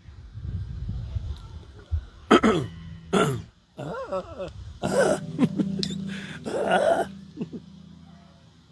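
A man clearing his throat and coughing several times between songs, turned away from the microphone.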